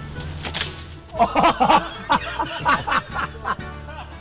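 Men laughing in short, pulsing bursts over background music, after a brief sharp click.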